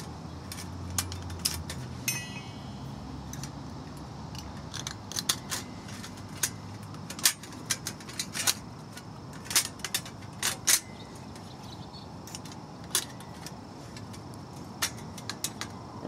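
Steel trivet bars being slotted into a folding 180 Tack camp stove: irregular light metallic clicks and clinks, with one brief metallic ring about two seconds in.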